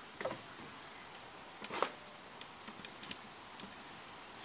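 A few faint, sharp clicks and light taps over a low steady hiss, the stronger click a little under two seconds in.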